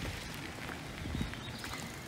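Footsteps crunching on a dirt and gravel yard, a few uneven steps.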